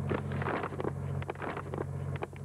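Paper grocery bag rustling and crackling as a child digs into it for cereal, in a string of short irregular crackles over a steady low hum.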